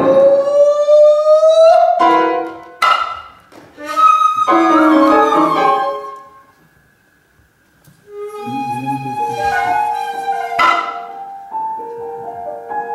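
Improvised music: a shakuhachi holds a note that slowly bends upward, followed by sparse piano notes and chords. Two sharp otsuzumi strikes, one about three seconds in and one near the end. The music drops almost to silence for about a second and a half past the middle.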